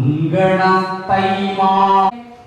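A single voice chanting verse in a sung, melodic style, as Malayalam poems are recited. There are two long held notes, the second one stopping abruptly near the end.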